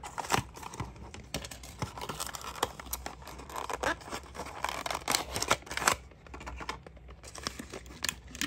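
A small cardboard box being opened by hand: irregular scraping, rustling and sharp little clicks of card flaps and sides. Near the end, a clear plastic blister tray crinkles as it is handled.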